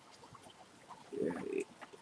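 A short pause, then about a second in, a man's brief low hum-like hesitation sound, lasting about half a second, made mid-sentence as he searches for his next words.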